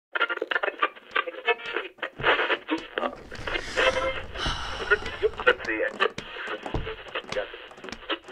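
Indistinct voices, with many short sharp clicks scattered through them.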